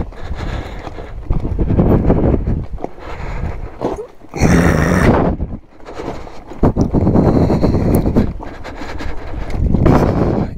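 Zero FX electric motorcycle rolling over loose rock and gravel: the tires crunch and clatter over stones and the bike rattles, in uneven surges with short lulls about four and six seconds in.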